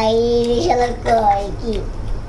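A high-pitched voice singing a few held notes, stopping about a second and a half in with a falling slide.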